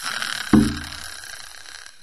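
Cartoon sound effect of a character flopping down: a hissing whoosh with a loud, low thud about half a second in that rings briefly and fades.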